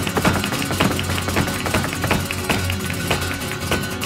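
Live flamenco: a flamenco guitar plays over rapid, rhythmic palmas (hand-clapping) and the sharp strikes of the dancer's footwork, several strikes a second.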